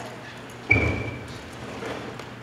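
A small ball dropped into an empty plastic trash can: a single sharp thud with a brief ringing ping, about two-thirds of a second in.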